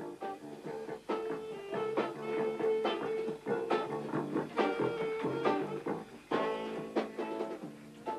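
Band music led by plucked guitar notes, with a held melody note under repeated plucked chords.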